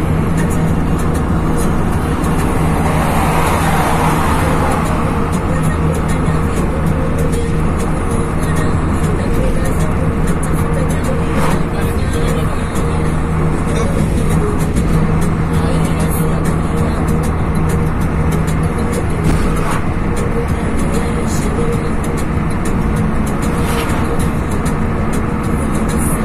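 Inside a moving car: steady engine and tyre drone on the highway, with music playing on the car stereo. A louder rush of noise about three seconds in as an oncoming lorry passes.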